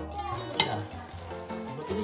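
Spinach and tuna sizzling in a stainless steel frying pan while a wooden spatula stirs them, with one sharp spatula stroke against the pan about half a second in.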